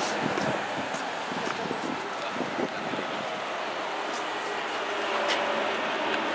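Steady din of road traffic on a busy city street.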